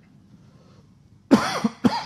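A short pause, then about a second and a half in a sudden cough and throat clearing, with a second brief catch just before the end.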